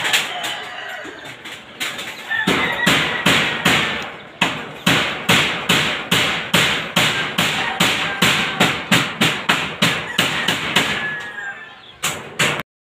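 Hammer striking nails into wooden framing: a steady run of sharp blows, about three a second, beginning a couple of seconds in and stopping near the end.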